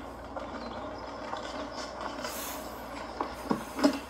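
Steady low noise from a film soundtrack playing through a television speaker, with a brief hiss a little past halfway and a couple of short faint sounds near the end.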